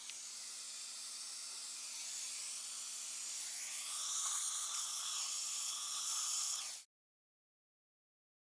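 Dental suction tip drawing air and fluid in the mouth, a steady hiss that grows louder and gains a lower gurgling tone from about four seconds in. It cuts off suddenly near the end.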